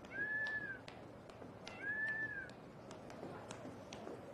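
An animal calling twice: two short high calls, each rising and then falling in pitch, about two seconds apart. Faint scattered ticks and taps sound around them.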